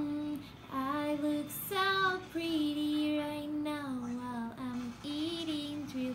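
A woman singing a slow tune of held notes that slide up and down, with no clear words.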